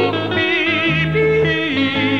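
Live country music: a male singer holds high notes with a wide vibrato, over strummed acoustic guitar and a backing band.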